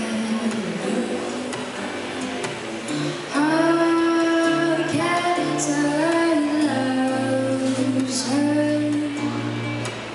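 A woman sings with her own acoustic guitar accompaniment. The guitar plays alone at first, and her voice comes in about three seconds in, louder than the guitar.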